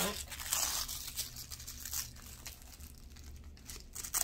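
Clear plastic protective wrap crinkling as it is cut and pulled off a handbag's handles. It is loudest in the first second, then lighter scattered rustling follows, with a short crackle near the end.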